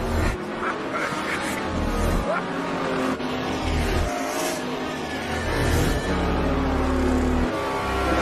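Race-car engine sounds from an animated film soundtrack, mixed with music and played backwards, so the engine notes and swells run in reverse.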